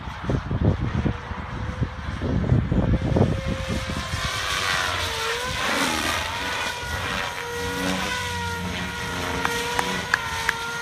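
SAB Goblin 700 electric RC helicopter with a Scorpion brushless motor flying overhead: a steady high whine from its motor and rotor that dips in pitch briefly about halfway through. Low gusty rumbling on the microphone in the first few seconds.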